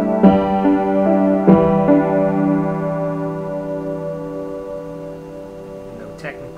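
Piano played with both hands: a few chords struck in the first two seconds, then the last one held and slowly dying away.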